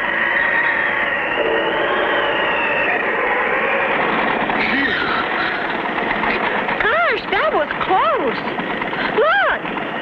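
Cartoon soundtrack: a steady, dense bed of music with wavering held tones, joined from about seven seconds in by a run of short pitched whoops that each rise and fall.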